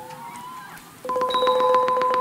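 Thai traditional ensemble music starts suddenly about a second in: a xylophone-type mallet instrument, likely the ranat, rolls one held note in octaves with rapid repeated strikes.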